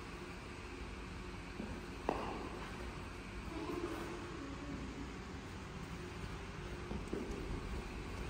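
Steady low background noise with a single sharp knock about two seconds in and a lighter tick near the end, and faint distant voices in the middle.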